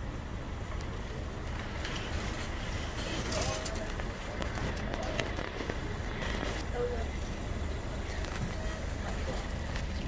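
Steady outdoor background noise with a low rumble, faint distant voices now and then, and a few light clicks.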